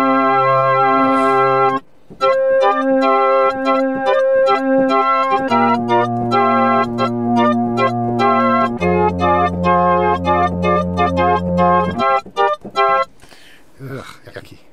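Roland Boutique JU-06 synthesizer playing held chords on a preset with bass notes beneath, an 80s-style patch. The chords change a few times, with a short break about two seconds in, and the playing stops near the end.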